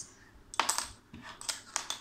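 Small plastic Lego pieces clicking and clacking as they are handled and set against each other and the tabletop, a few sharp clicks from about half a second in and again near the end.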